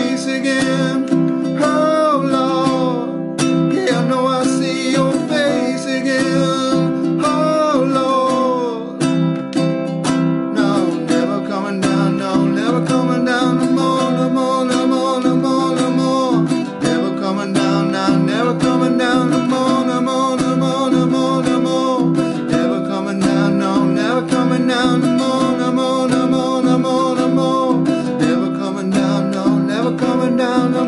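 Baritone ukulele strummed through a chord progression, with a man's voice singing along.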